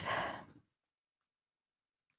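A woman's audible exhale, a sigh that fades out about half a second in, leaving near silence.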